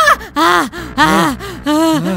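A man's voice making three or four short, loud gasping cries in quick succession, each rising and then falling in pitch.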